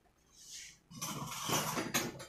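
Kitchen handling sounds at a bowl of flour: a faint brief hiss, then about a second of louder scraping and clinking of a utensil against the bowl.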